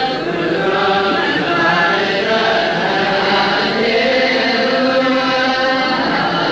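Ethiopian Orthodox clergy chanting the Mass liturgy together, several voices holding long, slowly gliding notes.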